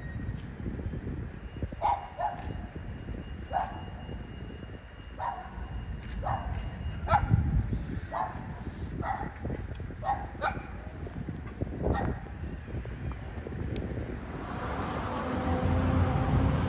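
A dog barking again and again, about a dozen short barks spread over ten seconds, over wind rumbling on the microphone. A broad rush of noise swells near the end.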